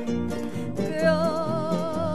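Live Mexican ranchera music: acoustic guitars strumming the accompaniment, with a woman's voice holding one long sung note with vibrato from about a second in.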